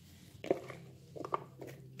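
A few light knocks and handling sounds as pieces of vegetable are dropped by hand into a cooking pot: one about half a second in, a small cluster a little after a second, and another near the end.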